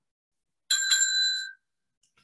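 Small timekeeper's bell struck twice in quick succession about three-quarters of a second in, ringing with a clear high tone for under a second. It signals that the one-minute preparation time is over.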